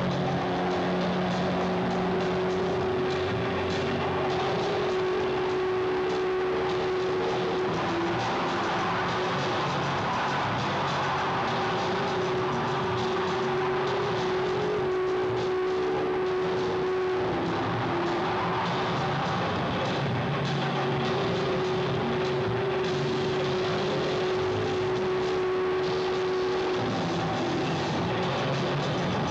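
Experimental electronic music played live: a dense, noisy texture with a steady held drone tone that breaks off and restarts about every nine seconds, over lower sustained tones.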